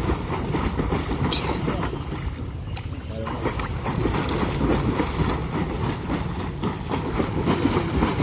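Continuous splashing and churning of pool water from a swimmer's legs kicking hard at the surface while he floats face down holding the pool edge, a beginner's flutter-kick drill.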